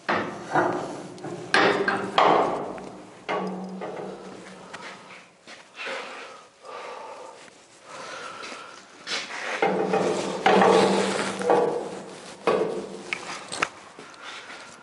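Metal clanks and knocks from a welded steel tiller arm being fitted and handled on a boat's stern. The knocks are irregular and several of them ring briefly, with a cluster near the start and another near the end.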